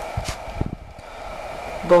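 Ballpoint pen writing briefly on paper: a short faint scratch and a few dull low knocks in the first second, over a faint steady high whine.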